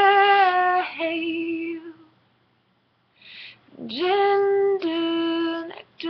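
A woman singing unaccompanied, a wordless vocalise. She holds a long note that steps down to a lower one, pauses in silence, then sings a second phrase of the same shape starting about four seconds in.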